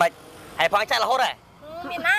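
Speech only: people talking in Khmer, with a short pause just past the middle.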